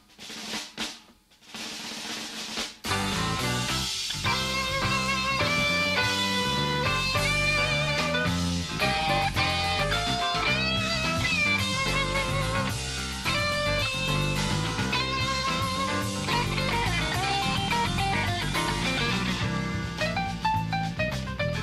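A live jazz-rock band starting a song: a few snare drum hits and a roll, then about three seconds in the full band comes in with drum kit, bass guitar, electric guitar and keyboards, playing on steadily.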